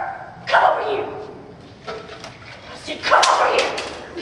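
Two loud wordless shouts or yells, one about half a second in and a longer one about three seconds in.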